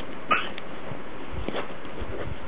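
A small dog gives one short, high whimper that rises in pitch, about a third of a second in.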